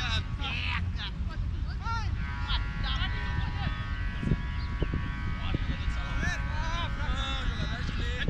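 Distant voices of footballers calling out across an open pitch, heard as short scattered calls over a steady low rumble.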